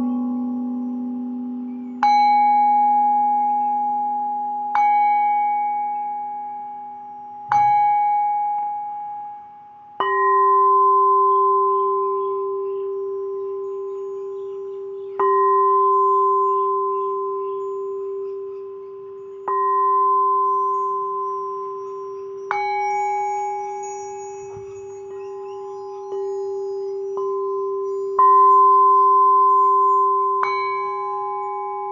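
Tuned metal percussion struck with mallets as sound therapy: about nine single notes a few seconds apart, each ringing on and slowly fading so that the notes overlap into a sustained chord.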